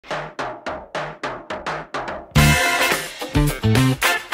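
Eight quick, evenly spaced drum ticks count in. About two and a half seconds in, a funk band track comes in, with electric bass playing punchy, rhythmic notes through a Neural DSP Quad Cortex capture of a Mesa WD-800 bass amp.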